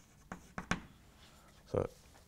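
Chalk writing on a blackboard: faint scratching with two short, sharp taps in the first second.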